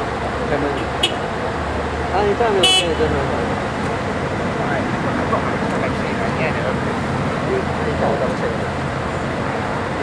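Scania L113CRL buses' diesel engines idling steadily, with voices talking in the background. A brief high-pitched tone sounds about two and a half seconds in.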